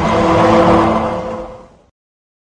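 An added editing sound effect: a rushing swell with a few steady tones in it, rising to a peak under a second in and dying away to nothing before two seconds.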